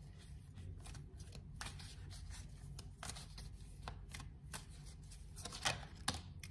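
A deck of divination cards being shuffled by hand: soft, irregular flicks and taps of the cards, with a louder snap just before the end.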